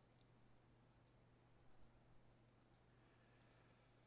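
Faint computer mouse clicks, about four, spread evenly a second or so apart, against near-silent room tone.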